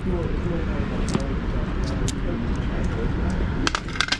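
Steady outdoor background of low rumble and faint murmuring voices, with a few light clicks as polished stone cabochons are picked up from a display tray.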